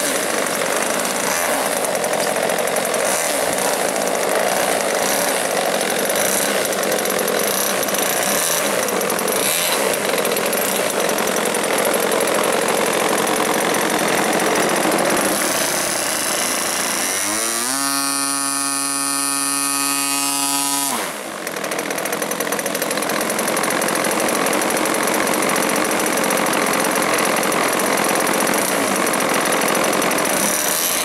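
MVVS 26cc two-stroke petrol engine in a Yak 54 RC model, running on the ground with its propeller turning. Past the middle its pitch falls and settles into a steady, cleaner tone for a few seconds, then it dips briefly and goes back to its fuller, harsher run.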